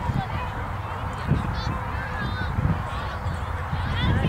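Wind rumbling on the microphone, with faint distant shouts and calls scattered through it.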